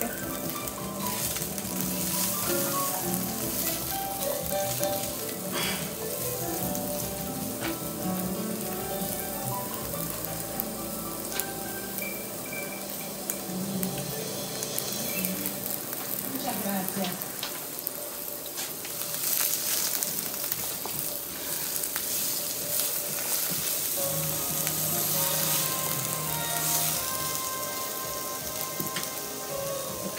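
Sliced onions sizzling steadily as they sauté in oil in a nonstick frying pan.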